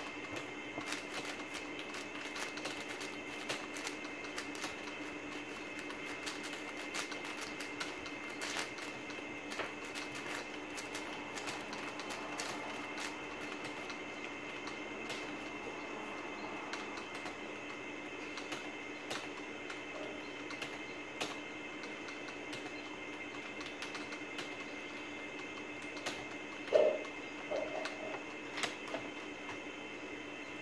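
Plastic 4x4 speedcube (a WuQue M) being turned by hand while scrambling: irregular runs of light clicks and clacks from the layers turning, over a steady background hum. A short, louder sound breaks in about 27 seconds in.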